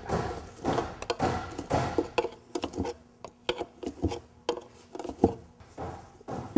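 Irregular metallic clicks, taps and scrapes of a pry tool working a front crankshaft seal over the lip of the crankshaft's wear ring on a CAT diesel engine block.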